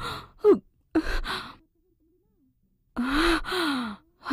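A woman's voice letting out breathy sighs: two short ones in the first second and a longer one with falling pitch after a silent gap near the end.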